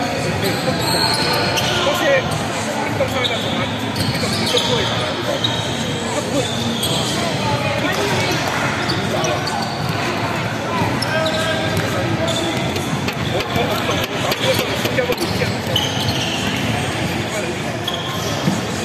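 Live basketball game on a hardwood court in a large indoor sports hall: the ball bouncing as it is dribbled, sneakers squeaking in short high chirps, and a steady background of players and bench calling out and chattering.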